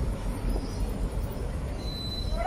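Outdoor street ambience: a steady low rumble with no voices.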